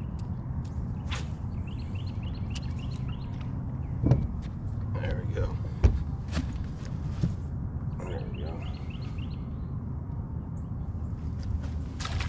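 Handling noise on a bass boat's deck as a caught bass is unhooked and lifted: a couple of sharp knocks about four and six seconds in and lighter clicks, over a steady low hum. Twice a short run of quick high chirps is heard.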